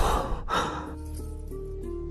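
A man takes a heavy, startled breath in the first second, over soft background music holding low sustained notes.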